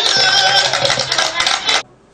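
A piece of music playing loudly, then cutting off abruptly just before the end.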